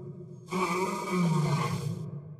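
A lion's roar played as a sound effect with echo. It starts about half a second in and trails off at the end.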